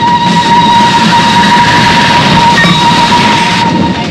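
Steam locomotive whistle held on one long steady note over a loud hissing rush and rumble from the running engine. The hiss falls away shortly before the whistle stops near the end.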